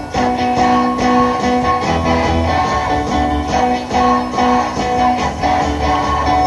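Live rock band playing an instrumental passage through PA speakers: guitar and keyboard over a bass line and a steady beat.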